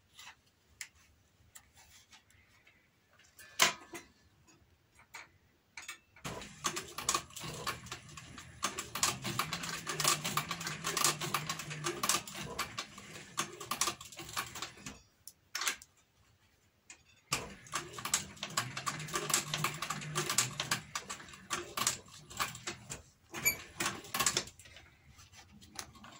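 Industrial leather sewing machine stitching thick leather with bonded nylon thread: rapid, even needle ticking over the motor's hum in two runs, the first starting about six seconds in and stopping for a couple of seconds, the second starting again about 17 seconds in. Before the first run there are only a few light clicks of the work being positioned.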